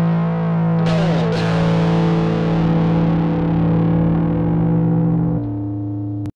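Instrumental music: a distorted, effects-laden guitar holds sustained chords, with a new strike and a downward slide about a second in, and a drop in level near the end as the piece closes.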